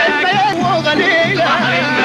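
Upper Egyptian Saidi folk music: a wavering, heavily ornamented melody line over a low pulse repeating about twice a second.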